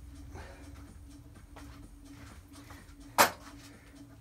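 A faint steady hum, then one sharp knock about three seconds in: a hard part set down on the workbench.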